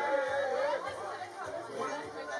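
Indistinct chatter of several people talking casually, no words clear.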